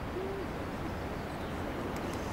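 Steady wind noise and distant surf, with a single brief low hoot about a quarter of a second in.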